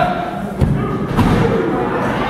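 Referee's hand slapping the wrestling ring mat during a pinfall count: two thuds a little over half a second apart, the first the louder, over crowd murmur.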